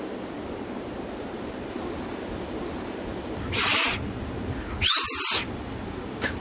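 Sea surf washing steadily on a beach, with two short bursts of hiss about three and a half and five seconds in.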